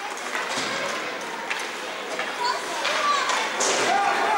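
Hockey rink game sound in an indoor arena: skates scraping the ice, several sharp clacks of sticks and puck, and short shouts from the young players on the ice.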